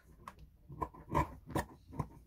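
Scissors cutting through fabric along a paper pattern: a series of short snips, about three a second.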